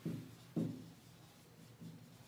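Marker writing on a whiteboard: a short stroke at the start and another about half a second in, then a fainter one near the end.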